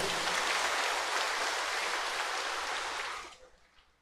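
Congregation applauding in a church, a dense, steady clapping that fades out about three and a half seconds in.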